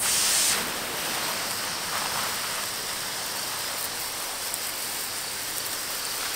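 Fine water spray hissing steadily as it falls onto the wood chips and hay of a compost pile. It is a little louder in the first half second.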